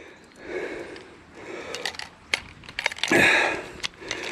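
A man breathing hard, with a loud breathy exhale about three seconds in, while a few sharp metallic clicks come from a fish lip-grip tool being handled and unclipped from a hanging scale.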